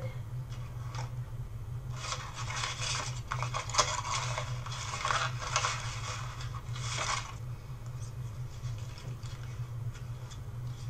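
Sheets of paint-coated collage paper rustling and crackling as they are handled, starting about two seconds in and stopping about seven seconds in.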